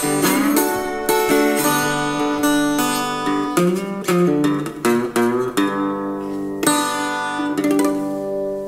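Small-bodied acoustic guitar playing the closing blues passage of a song: picked single notes, a few of them bent in pitch, then two or three full strums near the end, the last chord left ringing.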